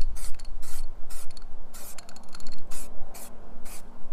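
Aerosol can of filler primer spraying in a series of short hisses, about two a second, as a coat of primer is put on the van's bodywork.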